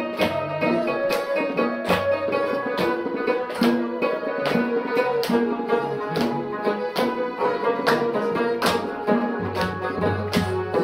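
Live Chitrali folk music: plucked long-necked lutes played over a hand-beaten dhol drum, with hand clapping marking a steady, even beat.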